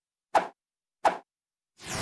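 Sound effects for an animated title graphic: two short pops about three-quarters of a second apart, then a whoosh that swells in near the end.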